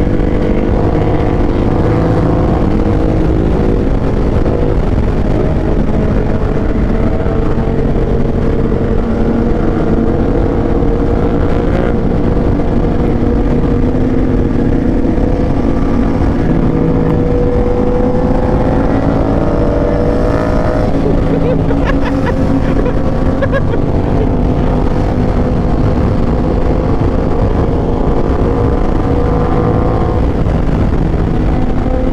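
Aprilia RS660's parallel-twin engine running at a steady highway cruise, its pitch drifting gently up and down, with heavy wind noise on the microphone. A few short clicks come about two-thirds of the way through.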